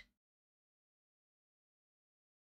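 Silence: the sound track is cut to digital silence, with no room tone.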